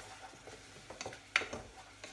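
A spoon stirring risotto rice in a saucepan, with a few light knocks against the pan, the sharpest just over a second in.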